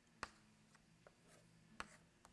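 Chalk tapping and drawing on a blackboard: two faint, short clicks, about a quarter second in and near the end, over near silence.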